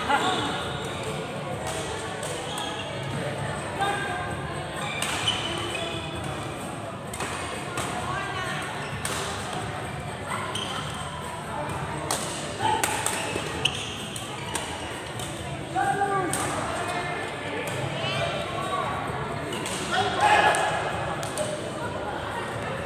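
Badminton being played in a large sports hall: sharp racket strikes on shuttlecocks at irregular moments, over a steady chatter of players' and onlookers' voices echoing in the hall.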